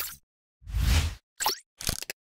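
Sound effects of an animated logo sting: a half-second whoosh about halfway in, then two short pops near the end.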